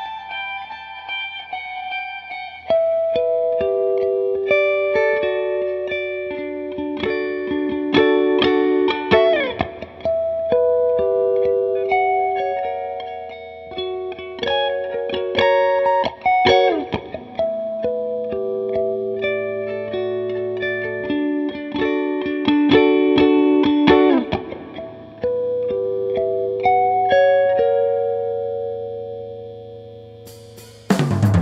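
Instrumental guitar passage of picked single notes and chords with several sliding notes, fading down near the end.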